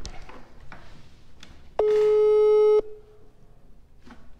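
Telephone ringback tone of an outgoing call that is waiting to be answered: one steady beep about a second long, about two seconds in.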